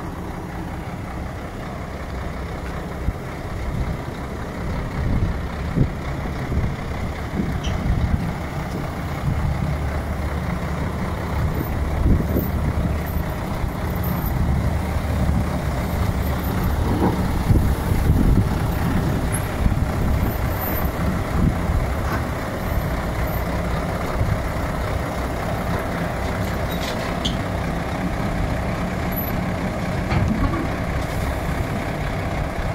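Heavy truck diesel engine running with a steady deep rumble that grows somewhat louder toward the middle.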